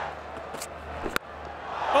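A single sharp crack of a cricket bat striking the ball cleanly, about a second in, over a steady stadium crowd murmur. The strike is a well-timed lofted hit.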